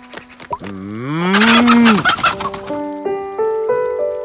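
A cow mooing once, rising in pitch and then held for about a second, with a chicken clucking rapidly over the end of the moo. Piano music comes back in during the second half.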